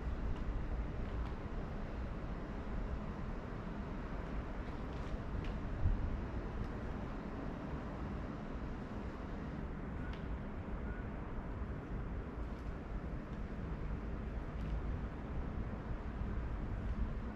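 Steady low rumbling background noise, with a soft thump about six seconds in and a few faint clicks.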